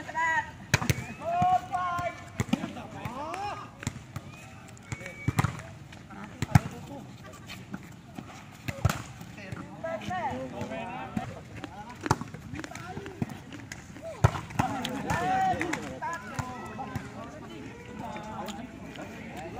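Volleyball being struck by hands and hitting the concrete court: a string of sharp slaps every one to three seconds, with players calling and shouting in between.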